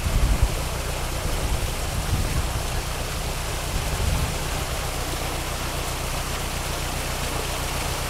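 Water gushing through the leaky wooden gates of a canal lock and splashing into the emptying chamber, a steady rushing, with a low rumble underneath and a brief louder thump right at the start.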